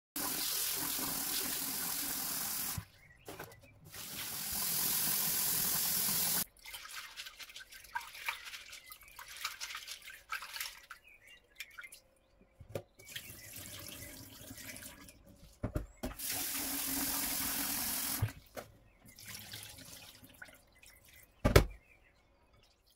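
A kitchen tap running into a glass bowl in a stainless steel sink, on and off three times, while hands swirl and rub dried African breadfruit (ukwa) seeds in the water between the runs to wash out the sand. A single sharp knock comes near the end.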